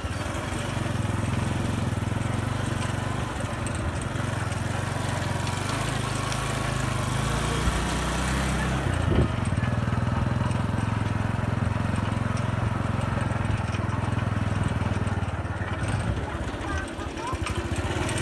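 Small motorcycle engine of a sidecar tricycle running steadily under way on a dirt track. Its note shifts about halfway through, with one sharp knock.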